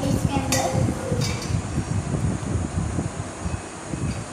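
An uneven low rumble with two light metallic clinks, about half a second and a second in, as a steel jug is picked up and handled.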